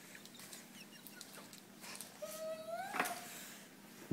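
A child's short whining hum, held for about a second and rising slightly in pitch, cut off by a sharp click.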